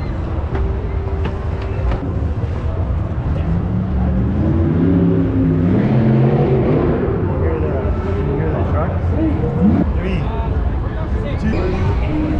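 Busy fairground ambience: a steady low machine rumble under voices talking, loudest in the middle.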